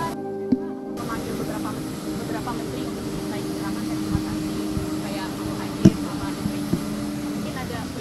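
Steady droning hum of a parked aircraft running nearby, holding a few steady tones, with two sharp clicks, the louder one about six seconds in.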